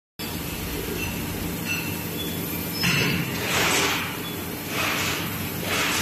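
Steady hum of plastic injection moulding machinery running in a large workshop. From about three seconds in, a series of hissy swishes comes roughly once a second and stands louder than the hum.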